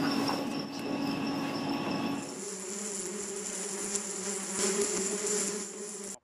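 Insects buzzing in a steady drone. About two seconds in it changes abruptly to a lower buzz with a high, thin shrilling above it.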